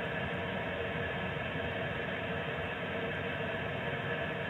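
Steady radio static from a receiver: an even hiss with a faint underlying hum.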